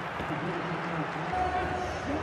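Pitch-side match sound from a rugby broadcast: faint shouting voices of players over a steady background hiss and low hum.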